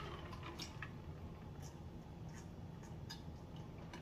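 Quiet swallowing from a large plastic jug of juice, with scattered faint small clicks from the throat and mouth.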